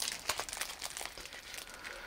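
Clear plastic shrink-wrap on a sticker set crinkling softly under the fingers as the package is handled and turned over, with small irregular crackles.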